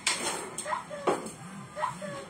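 A small glass wine bottle is set down on the countertop, with a sharp knock about a second in. Under it a phone ringtone plays, a short rising tone repeating about once a second.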